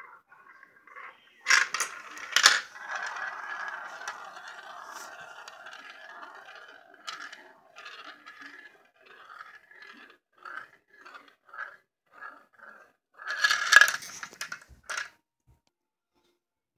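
Marbles rolling around the inside of stacked plastic bowls and dropping through the holes in them. Two sharp clacks are followed by several seconds of steady rolling, then scattered small knocks, and a louder clatter near the end.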